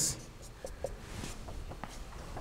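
Marker pen writing on a whiteboard: faint short squeaks and taps of the pen strokes.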